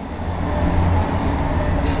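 Steady low rumble of passing heavy vehicles, with one short strike on a pad near the end.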